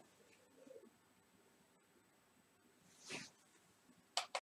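Near silence: room tone, with one faint, brief noise about three seconds in.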